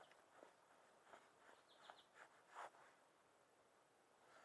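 Near silence outdoors, broken by a few faint, short bird chirps.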